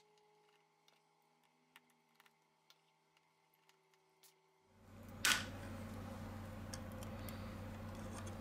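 Near silence for the first half, then faint steady room hum from about five seconds in, with a single short click just after the hum begins.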